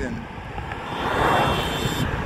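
A motor vehicle passing on the street, its noise swelling about a second in with a faint high whine above it.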